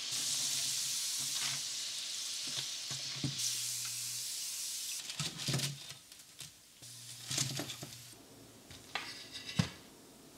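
Potato croquettes deep-frying in hot oil: a steady sizzle, with a slotted spoon stirring them in the pot. About five seconds in the sizzle stops, and a few brief crackles and taps follow.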